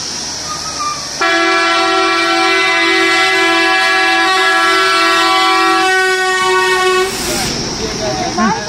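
Bus horn sounding in one long, steady blast of about six seconds, starting about a second in and cutting off about a second before the end, as the bus approaches. It is followed by a short rush of noise as the bus passes close by.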